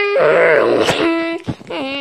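A person's voice wailing and moaning in drawn-out, wordless notes, each held note lower in pitch than the last.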